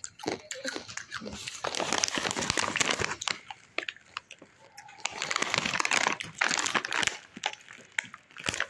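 Doritos Dinamita chip bag (metallised plastic film) crinkling as it is handled, in two long stretches of rustling, one in the first half and one later on.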